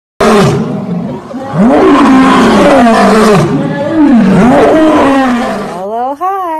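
Male lion roaring: several loud, long roars in a row, each rising and then falling in pitch.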